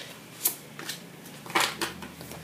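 Large tarot cards being handled: a card drawn from the middle of the deck and laid down on the spread, heard as a few short papery slides and snaps, the longest and loudest about one and a half seconds in.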